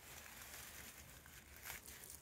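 Near silence with faint rustling of fireweed leaves as a hand slides down the stalk and strips them off.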